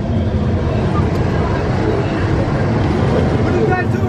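Loud, steady low rumble with no clear beat, and a voice starting near the end.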